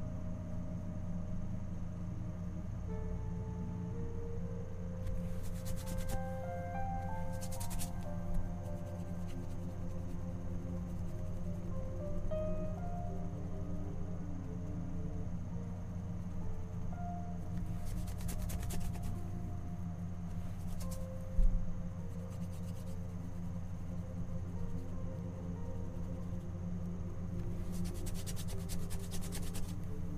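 Soft background music with a steady low hum under it, and a few short scratchy strokes of a paintbrush on the canvas.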